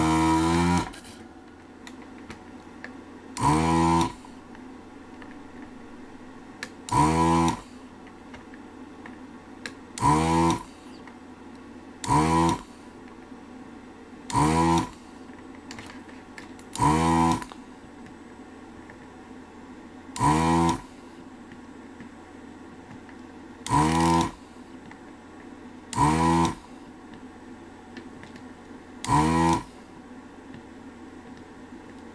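ZD-915 desoldering station's vacuum pump buzzing in about eleven short bursts, each under a second, every two to three seconds, as the gun's trigger sucks molten solder off one connector pin after another. Between the bursts the station's small cooling fan hums steadily; it is a bit noisy.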